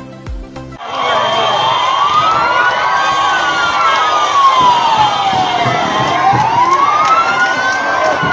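A vehicle siren wailing slowly up and down, about one rise and fall every five seconds, over the steady noise of a crowd. Music and a voice cut off just before it starts, under a second in.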